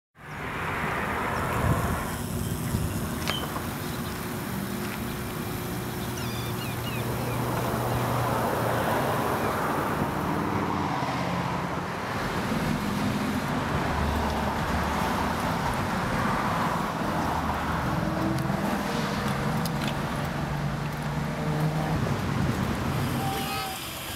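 Steady street traffic: cars passing with a low engine hum over a continuous wash of road noise.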